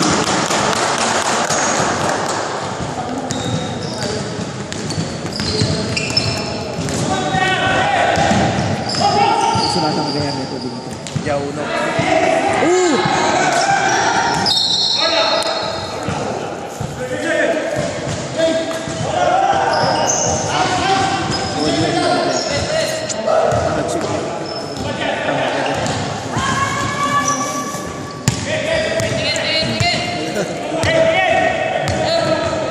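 Basketball bouncing on a hardwood gym floor during a game, with players' shouts echoing in the large hall.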